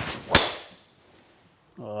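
Golf driver swing: a short whoosh of the club rising into a sharp crack as the clubface strikes the ball about a third of a second in, then a brief ring-out.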